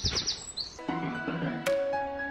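A garden songbird's rapid trill of repeated high notes, fading out about half a second in. About a second in, background music begins with steady held tones, and a plucked note sounds near the end.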